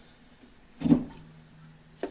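A single knock from the electric lathe motor being handled on the bench, about a second in, followed by a short, fading low hum.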